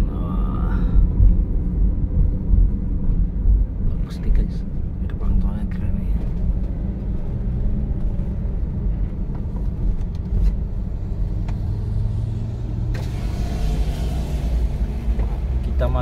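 Inside a car's cabin, a steady low rumble of engine and tyre noise as the car rolls slowly into a toll-booth queue. A hiss comes in for a couple of seconds near the end.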